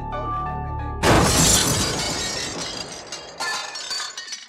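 Soft instrumental music with sustained notes over a low drone, cut off about a second in by a sudden loud crash of shattering glass that dies away over the next two seconds, with a few scattered clinks near the end.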